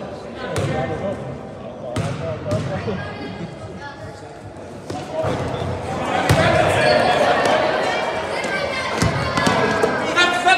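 A basketball bouncing on a gym floor, a few sharp bounces early on, with a loud knock about six seconds in. Voices and shouting echo through the gym and swell over the second half as players go for the rebound.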